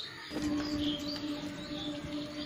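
Small birds chirping, short high calls repeating every half second or so. About a third of a second in, a steady low held tone begins underneath: the opening note of background music.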